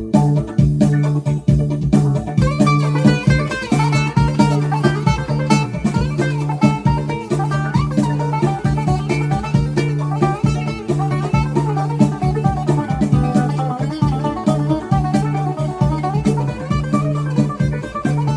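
Greek bouzouki played solo: a fast melody of rapidly plucked notes with a steady low note sounding underneath.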